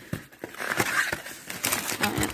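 Cardboard trading-card blaster box being handled and opened by hand: a few light taps, then a cardboard-and-paper rustle that grows louder near the end.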